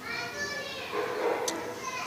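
A child's voice, faint and high-pitched, with a short high tick about one and a half seconds in.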